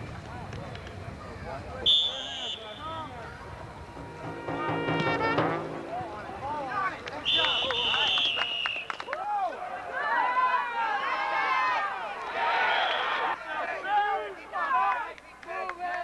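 Two referee's whistle blasts at a football game: a short one about two seconds in and a longer one about seven seconds in as a tackle ends the play. Around them, spectators' voices shout and call out, and a held horn-like note sounds briefly around four seconds in.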